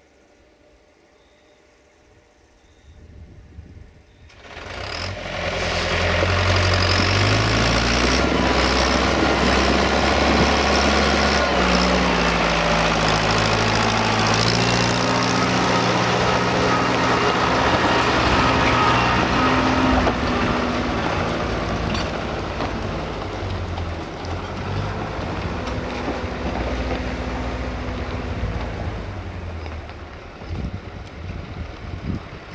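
Farm tractor's diesel engine pulling a loaded trailer along a dirt road, coming up about four seconds in and passing close by, its engine note stepping up and down in pitch several times. It eases off somewhat over the last ten seconds as it moves away.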